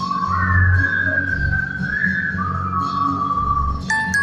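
A melody whistled into a microphone, long held notes sliding up and down in pitch, over a recorded backing track with a pulsing bass line.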